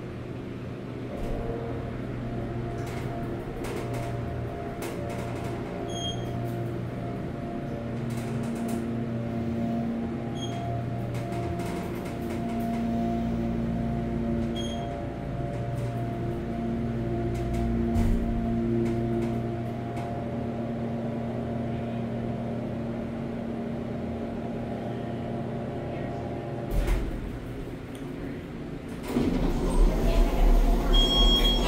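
Kone Series 220 hydraulic elevator riding up several floors, its pump motor giving a steady, many-toned hum. Three short high beeps come about every four to five seconds, one for each floor passed. Near the end the car stops with a thump and the doors slide open.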